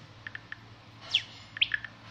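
A small bird chirping: three short high pips, then two quick downward-sweeping chirps with a few more pips between them, starting about a second in.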